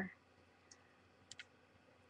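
Near silence with a few faint, short clicks: one a little under a second in and a quick pair about a second and a half in.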